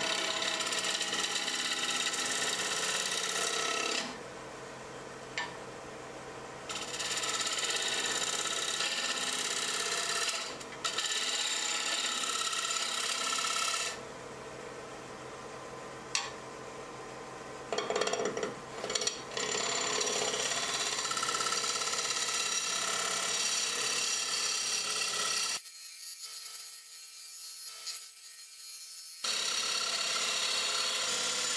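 A bowl gouge cuts into a monkeypod bowl blank spinning on a wood lathe: a rough, steady scraping over the lathe's motor hum. The cutting stops twice for a couple of seconds while the lathe keeps humming, and a few seconds before the end it drops to a quieter stretch.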